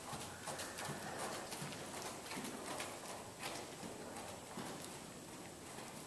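Hoofbeats of a ridden Thoroughbred gelding moving on the dirt footing of an indoor arena: a steady run of beats that grows fainter as the horse moves away.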